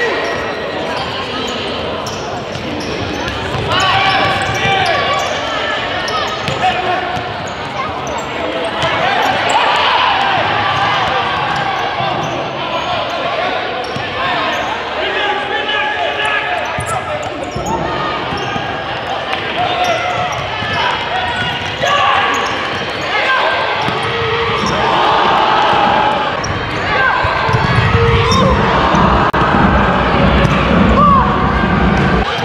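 A futsal ball being kicked and bouncing on a hardwood gym floor, amid indistinct voices of players and spectators, all echoing through a large hall.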